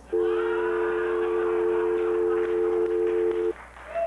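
A steady chord of several held tones, played as a sound effect on the prize announcement, lasting about three and a half seconds over a hiss and then cutting off suddenly.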